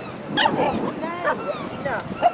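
A dog whining and yelping: a run of short, high, rising-and-falling cries starting about half a second in.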